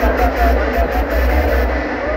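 Loud raw hardstyle music played over a large event sound system, with a deep distorted bass and a short stepping lead melody.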